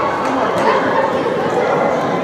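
Young players and coaches calling out sharply to each other during a football match. The voices are echoing in a large indoor hall over a steady background hubbub.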